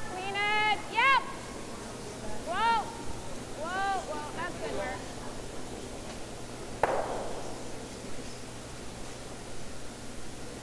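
Curlers shouting short sweeping calls in three bursts, then a single sharp crack of one granite curling stone striking another about seven seconds in: a takeout shot hitting a guard.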